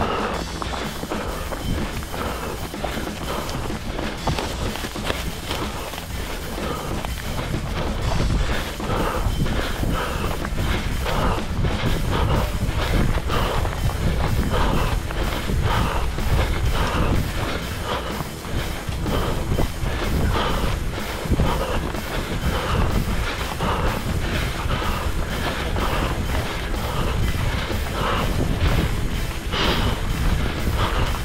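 Running footsteps in a steady stride, about three steps a second, heard from a head-mounted camera.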